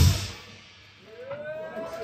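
A rock band's last chord and drum hit ringing out and fading as the song ends, then after a moment of quiet a few audience members start whooping and cheering about a second and a half in.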